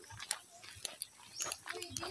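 Footsteps on a dirt and grass trail, irregular short scuffs and crunches about two or three a second, with faint voices; a voice comes in near the end.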